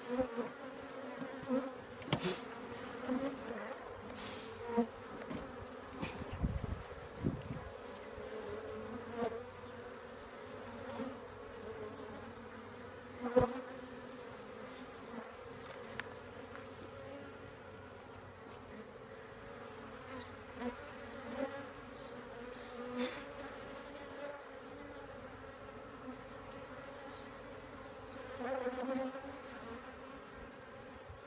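A honey bee colony humming steadily from an open hive, a layered drone that swells and fades as bees pass close. A few light knocks cut through it, the sharpest about thirteen seconds in.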